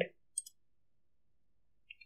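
A few faint clicks of a computer mouse, a pair about half a second in and another just before the end, with near silence between them.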